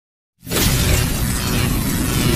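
Sound effect of an intro logo animation: after a moment of silence, a loud, dense noise with a heavy low rumble starts suddenly about half a second in and holds steady.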